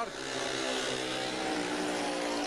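Several speedway motorcycles, each with a 500 cc single-cylinder engine, running together as the riders race away from the start of a heat.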